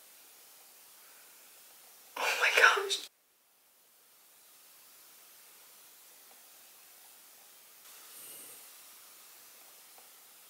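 Faint steady room hiss, broken about two seconds in by a short whispered burst of a woman's voice, under a second long, followed by a second or so of dead silence.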